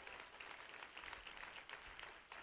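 Congregation applauding: a faint, steady patter of many hands clapping.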